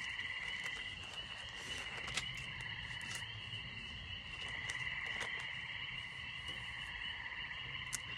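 Faint, steady chorus of calling animals, a finely pulsing trill held at two high pitches throughout, with a few soft ticks.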